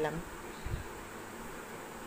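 Steady faint background hum and hiss, with one soft low thump about two-thirds of a second in.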